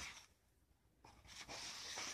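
Faint rustle of paper pages being handled: a short brush at the start, a quiet gap, then a longer rub from about a second and a half in.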